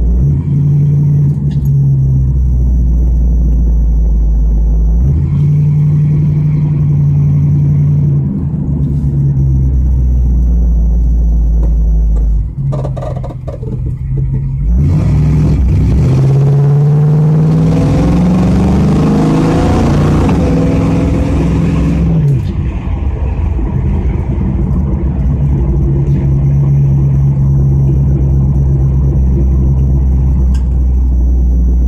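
A 1979 Pontiac Firebird's V8 engine heard from inside the cabin while driving, with a steady low rumble. About halfway through, the engine pulls hard and its pitch climbs for several seconds, then falls away abruptly before it settles back to steady cruising.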